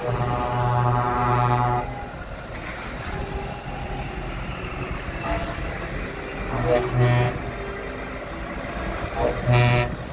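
Vehicle horns honking from passing convoy vehicles: three short toots in the first two seconds, two more about seven seconds in, and one short toot near the end. Engines of passing vans and trucks run throughout.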